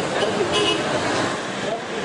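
Outdoor street noise: vehicles running as a van pulls away, with voices of people standing around.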